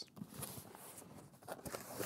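Cardboard product box being handled and its lid lifted off: faint rustling of cardboard, with a few soft scrapes and taps in the second half.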